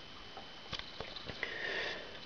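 A person sniffing softly, with a few faint clicks about a second in.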